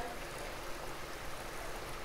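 Water poured steadily from a plastic jug into water below, a continuous splashing trickle.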